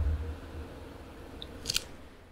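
Faint low room noise fading away, with a brief crisp click-crunch about three-quarters of the way through.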